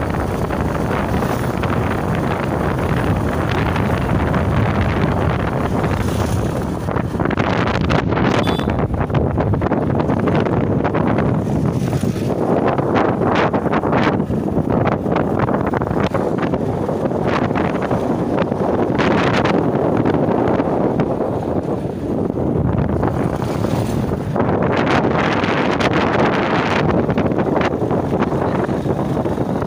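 Wind rushing over the microphone of a camera carried on a moving motorcycle, with the bike's running noise beneath it. The rush swells louder in gusts several times.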